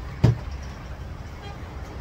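A single dull thump about a quarter of a second in, over a steady low rumble.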